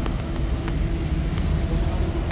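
Street traffic noise: a steady low engine rumble from a minibus and cars close by. Light ticks come about every 0.7 s.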